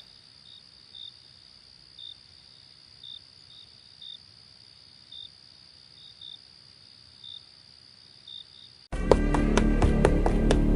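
Crickets chirping in short, single chirps about once a second over a faint steady high tone, a night-time ambience. Near the end, loud dramatic music cuts in suddenly with sharp percussive hits.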